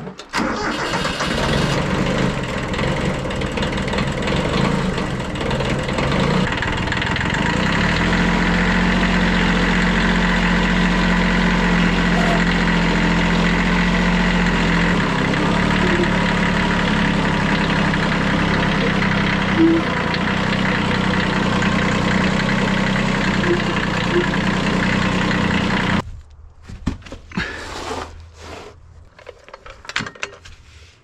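An orange compact tractor's engine starts up and runs while the tractor pushes a pickup truck. Its low note grows stronger from about 8 to 15 seconds in as it works harder. The engine sound stops abruptly a few seconds before the end, leaving only faint clicks and knocks.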